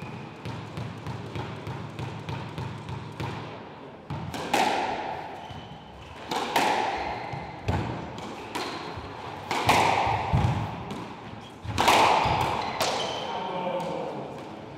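A squash ball tapped lightly several times a second, then hard squash shots: sharp racket and wall impacts about two seconds apart, each ringing in the court.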